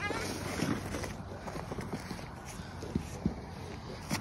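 Plastic sled scraping slowly over crusty snow, a steady hiss with a few faint knocks.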